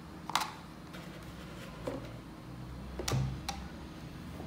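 Plastic parts of an electric drip coffee maker clicking and knocking as they are handled and fitted: a few short, sharp clicks, the loudest about three seconds in.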